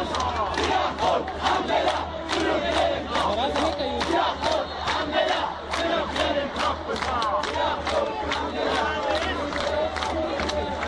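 Football crowd in a stadium stand shouting, with many voices over one another, mixed with scattered handclaps.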